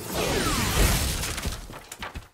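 Cartoon sound effect: a sudden burst of noise with a falling whistle that sweeps down over about a second and fades out near the end.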